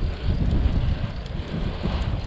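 Strong wind buffeting the microphone on a moving bicycle: a steady, heavy low rumble with a hiss above it.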